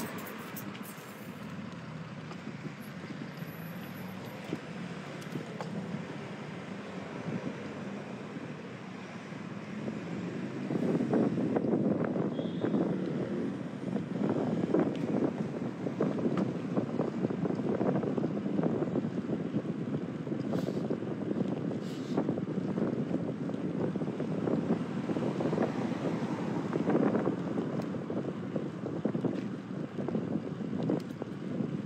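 Wind rumbling on a phone microphone carried on a moving bicycle, mixed with street traffic noise. It grows louder and rougher about ten seconds in.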